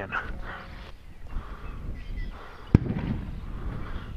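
A single sharp, distant bang about three-quarters of the way through, from a farm's bird-scare 'boomer' going off, over low background noise.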